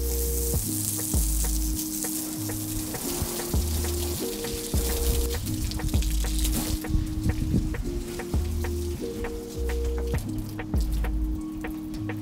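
Background music with a bass line and steady beat over the hiss of water spraying from a garden hose nozzle onto a car. The spray hiss fades out about seven seconds in, and the music carries on.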